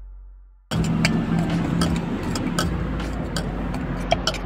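After a brief dropout at the start, a metal spoon clicks and scrapes against a steel bowl as sweetcorn chaat is mixed, over the steady low running of a motor vehicle's engine.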